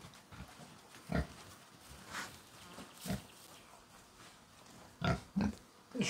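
Pig giving a few short, soft grunts, spaced about a second apart.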